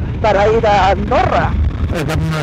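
A man's voice, with no words the recogniser could catch, over the low steady rumble of a motorcycle riding along with wind on the microphone.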